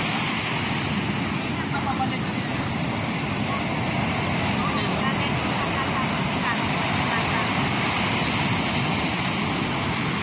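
Ocean surf breaking and washing up the beach: a steady, unbroken rush of noise.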